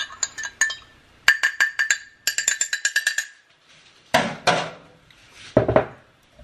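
Metal spoon stirring coffee in a glass mug, clinking rapidly against the glass with a ringing note, about six clinks a second, for roughly three seconds. After a pause come two louder handling noises near the end.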